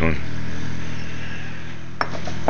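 A man's voice ends a word at the start, followed by a steady low hum with several even tones, fading slightly in loudness.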